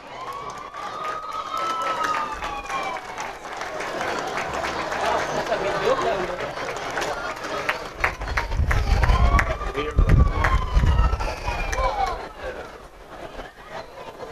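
Street crowd chatter with a siren wailing, rising and falling, twice: once near the start and again about ten seconds in. A low rumble joins about eight seconds in and fades before the end.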